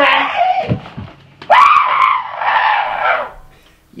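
A person screaming in a high, strained voice: a short scream at the start, then a longer one beginning about a second and a half in and lasting nearly two seconds.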